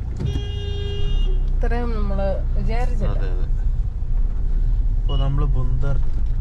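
Steady low rumble of a moving Mahindra car heard from inside the cabin, engine and road noise. Near the start a vehicle horn sounds once, a steady honk lasting about a second.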